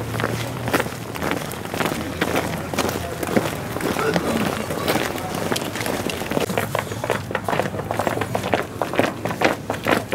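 Many football cleats clattering on a concrete walkway as a team walks out together in a crowd, a dense run of irregular clicks, with indistinct shouting and chatter from the players.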